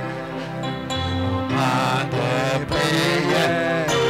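Live worship music: sustained keyboard chords over a bass line, with a voice singing a slow, chant-like melody into a microphone, stronger from about a second and a half in.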